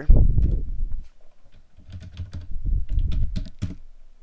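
Typing on a computer keyboard: a loud knock right at the start, then a quick run of separate keystrokes in the second half.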